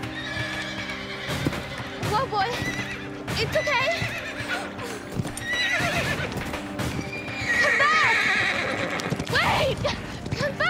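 A bay horse whinnying several times as it rears and plunges on a lead rope, with hoof thuds on turf; the loudest, longest whinny comes a little past the middle.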